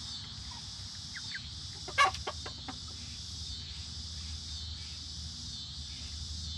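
Young Silkie chickens at a feeder: one loud, sharp call about two seconds in, followed quickly by a few shorter calls, with a couple of faint peeps just before. A steady high-pitched drone runs behind.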